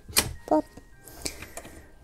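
Two sharp clicks about a second apart from a hand working the metal latch on an old steamer trunk.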